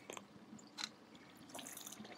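A few faint water splashes and drips from a hooked bass thrashing at the lake surface, with a hiss of splashing near the end.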